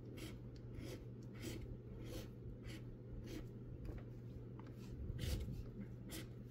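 Plastic scratcher tool rubbing the latex coating off a lottery scratch ticket in short, faint strokes, a little under two a second.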